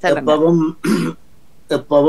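Speech over a video call, with a short hissing sound about a second in.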